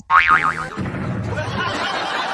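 A short warbling, boing-like comic sound effect whose pitch wobbles up and down, then a crowd cheering and clapping in a steady din.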